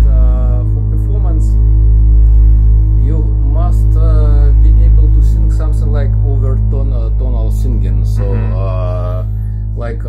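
SOMA Pipe voice-driven synthesizer on its Orpheus algorithm, played raw: a loud, steady low drone, with wordless vocal tones over it that bend up and down. Near the end the drone eases off and a denser cluster of wavering tones sounds.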